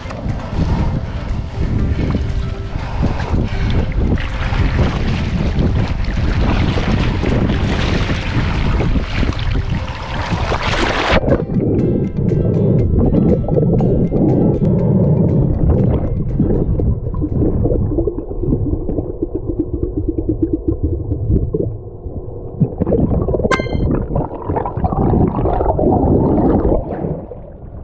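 Splashing and water noise from a snorkeler entering shallow seawater, heard on a mask-mounted GoPro. About 11 seconds in the sound turns suddenly muffled as the camera goes underwater, leaving low underwater rumble and bubbling.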